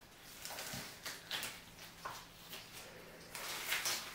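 Quiet room noise with faint rustling and a few soft knocks, as of someone moving and handling things at a worktable.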